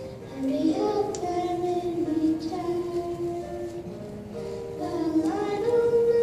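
A school choir of children singing a slow melody in long held notes.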